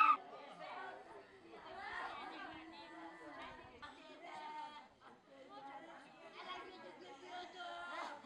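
Crowd of people talking at once: many overlapping, indistinct voices, with one brief louder voice right at the start.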